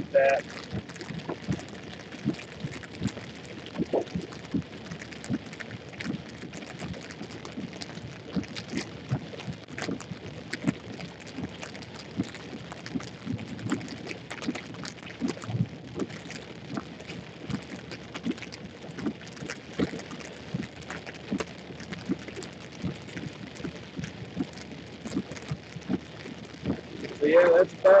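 Raindrops tapping irregularly on a car's windshield and roof over a steady background rush, heard from inside the car during a thunderstorm.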